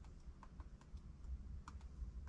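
A few faint, irregular light clicks and taps over a low background rumble.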